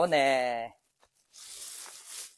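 A voice says one short word. About a second and a half in comes a brief rustle of leaves and undergrowth being brushed or pulled.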